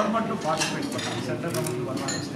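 Dishes and cutlery clinking under ongoing talk.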